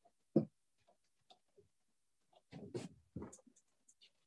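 Movement sounds of a person exercising barefoot on a floor mat: a sharp thump about a third of a second in, then two short bouts of scuffing and rustling a little past halfway.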